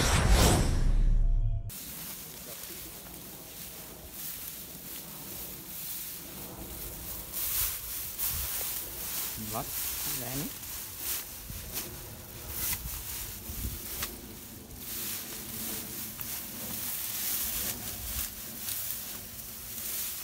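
A short, loud whooshing intro sound effect that cuts off suddenly, followed by tall grass and stems rustling and crackling as a person pushes through dense vegetation on foot.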